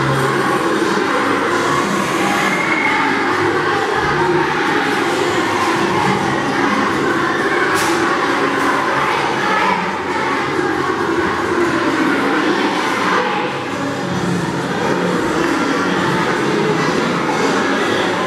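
A large group of primary schoolchildren singing a Christmas carol together.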